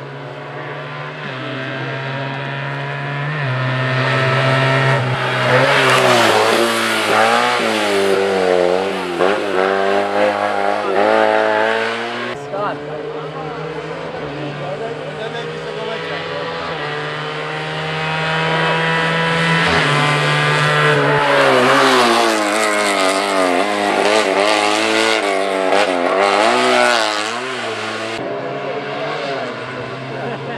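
Fiat 500 racing cars driven hard through a hairpin one after another, their engines revving up and dropping again and again as they brake, shift and accelerate. Two cars are heard, each growing loud as it passes: one in the first half and another from about 20 seconds in.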